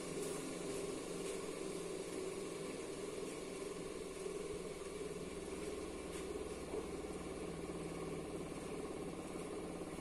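A 700 W bench polisher running unloaded, its electric motor giving a steady, even hum.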